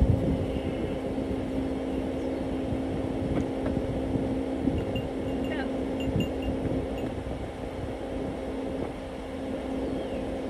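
A steady mechanical hum with a low rumble under it, and a few small knocks and scuffs while a goat is pushed into a pickup truck's back seat.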